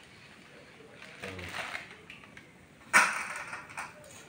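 A bundle of dry spaghetti going into a pot of water: a sudden sharp clatter about three seconds in, fading away over most of a second.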